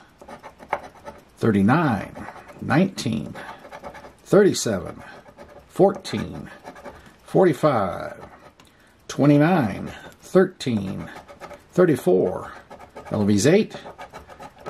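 A large coin scraping the latex coating off a scratch-off lottery ticket in short strokes. A man's voice comes in and out over it and is louder than the scraping.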